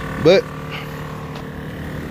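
Air-suspension compressor running without stopping, a steady hum. It won't shut off: the owner thinks a leaking fitting is keeping the pressure switch from cutting it out.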